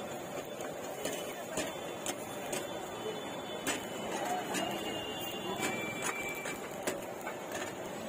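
Street-stall kitchen noise: irregular sharp clicks and taps of a knife and metal utensils on a cutting board and steel pots, over steady background noise and faint crowd chatter.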